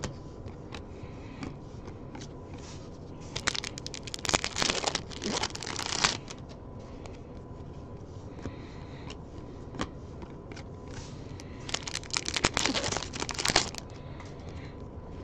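A stack of baseball trading cards being slid and flipped through by hand: two spells of quick rustling and clicking, one about four seconds in and one near the end, with single card clicks between.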